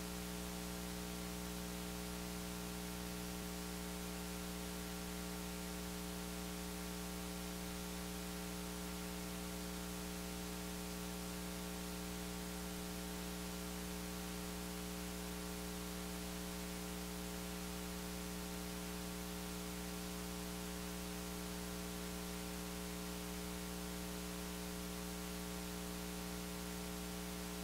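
Steady electrical mains hum with a layer of static hiss, unchanging throughout, from the open microphone and audio feed at an empty podium.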